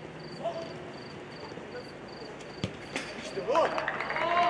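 A football is kicked hard once, a single sharp thud about two and a half seconds in, during a small-sided game on artificial turf. Players start shouting about a second later as the shot goes in for a goal.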